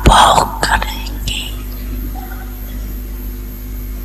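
A woman's voice speaking a few words close to a microphone in the first second or so, then a pause filled by the steady low hum and hiss of the recording.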